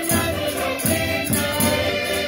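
A man singing loudly in Minho folk style, accompanied by a Portuguese concertina (diatonic button accordion) playing sustained chords with a steady rhythmic bass.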